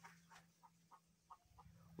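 Near silence, with a few faint, short clucks from chickens.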